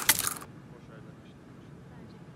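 A roasted sunflower seed cracked open between the teeth: a sharp, crackly snap right at the start, followed by faint low noise.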